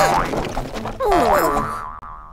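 Cartoon scuffle sound effects: springy boings and sliding squeaks, with two sudden hits, one at the start and one about a second in, fading out near the end.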